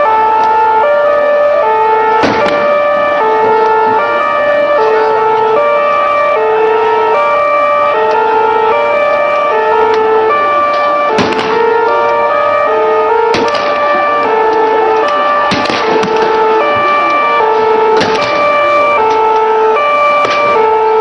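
A two-tone siren alternating between a high and a low note in a steady, regular cycle, with a few sharp bangs cutting through it.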